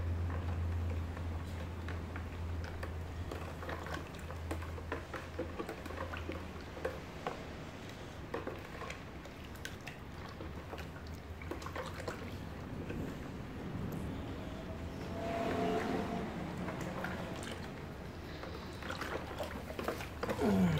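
Milk-based ice-cream mix being stirred by hand in a bucket: liquid sloshing with scattered light clicks, over a low steady hum that fades after about six seconds.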